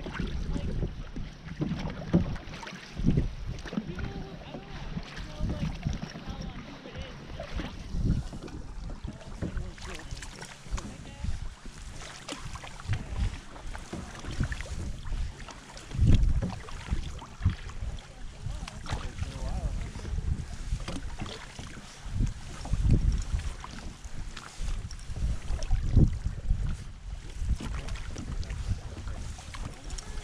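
Water sloshing and splashing around a canoe under way on a river, with paddle strokes and wind rumbling on the microphone; a few louder splashes stand out.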